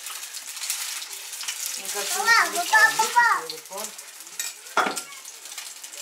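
Chopped meat cutlets sizzling and crackling in hot oil in a frying pan, with a spoon working in the pan. There is one sharper knock near the end.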